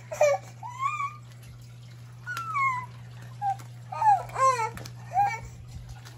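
A baby fussing, with about half a dozen short whiny cries and babbles that rise and fall in pitch, over a steady low hum.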